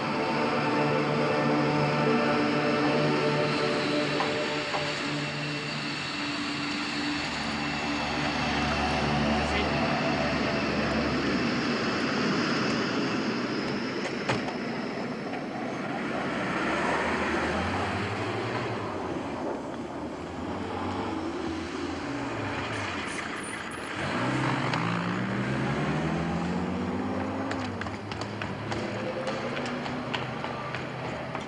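A taxiing delta-wing fighter jet's engine hums with a steady high whine. In the second half a military utility vehicle's engine revs up, its pitch climbing and dropping several times as it accelerates.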